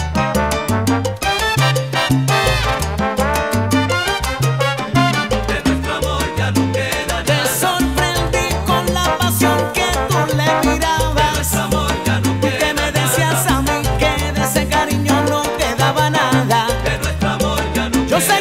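Salsa romántica recording: a full salsa band playing, with a steady, rhythmic bass line under it.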